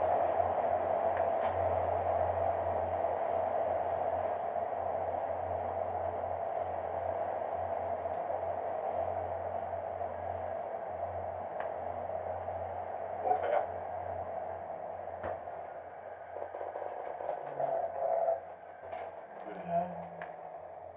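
Steady drone and low hum of a man-rated human centrifuge spinning at 4 G, heard from inside its gondola, with a few faint clicks. The drone eases off in the last few seconds as the centrifuge slows back to 1 G.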